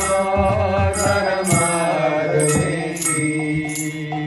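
Sung devotional mantra chant with instrumental accompaniment. A short, bright percussion stroke recurs every half second or so over a steady low drone.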